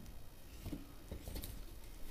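Faint handling noises: a few light scratches and clicks as hands move the wires and a small plastic connector on the base of an electric hot pot.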